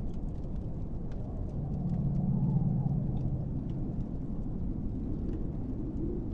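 Low, steady rumbling background ambience with faint scattered crackles. A deeper hum swells up about a second and a half in and fades back after a couple of seconds.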